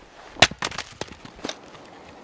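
An axe striking and splitting a log on a chopping block: one sharp crack, followed by a few lighter knocks of split wood over the next second.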